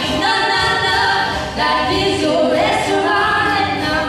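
Two female singers singing a lively show tune together into handheld microphones, their voices amplified.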